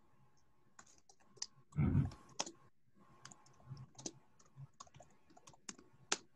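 Typing on a computer keyboard: a run of irregular key clicks as a web search is typed, picked up over a call microphone. About two seconds in comes one louder, dull thump.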